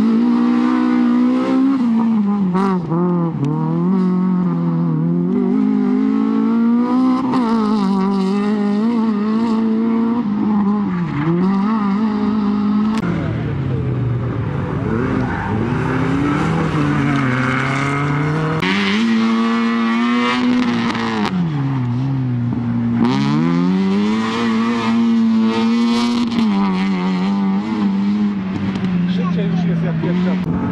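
Hatchback rally cars driven flat out on a tarmac sprint stage, one after another. The engines rev hard, drop at each gear change or lift for a corner, and climb again, with the note repeatedly sweeping up and down.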